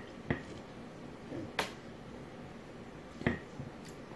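A person gulping down a thick green vegetable smoothie: about five short swallowing clicks, spaced irregularly.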